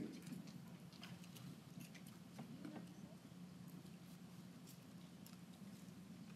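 Near silence: room tone with a faint steady hum and a few faint scattered ticks.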